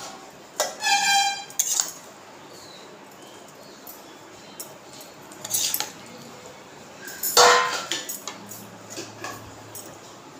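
A spatula clatters and scrapes in a kadhai and against a steel serving plate as the cooked shrimp curry is dished out. About a second in, a struck steel plate rings briefly. Further knocks follow, the loudest about seven and a half seconds in.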